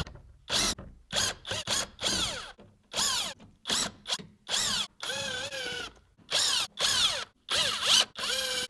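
Cordless drill/driver with a T30 Torx bit backing out the screws of a plastic splash shield under a car. It runs in about a dozen short trigger bursts, its motor whine sweeping in pitch with each one.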